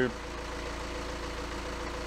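A car engine idling steadily, an even low hum with a fine regular pulse.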